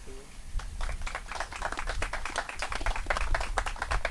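A small crowd applauding: a dense, steady patter of hand claps that builds in the first second.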